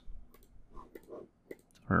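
Several sharp, separate computer mouse clicks, made while working through a web app on screen. Faint low murmuring sits between the clicks, and a man's voice starts near the end.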